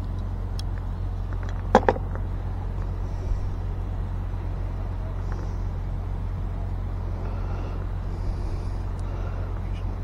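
Steady low rumble throughout, with one short vocal sound about two seconds in.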